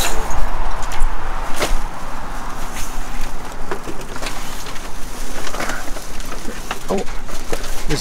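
Rustling and clattering of items being handled and pulled from a dumpster, with irregular small knocks over a steady low hum.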